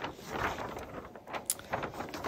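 Large paper instruction sheets rustling as pages are flipped and unfolded by hand, with a few sharp crackles of the paper in the second half.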